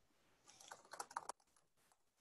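Typing on a computer keyboard: a quick run of keystrokes lasting under a second, starting about half a second in.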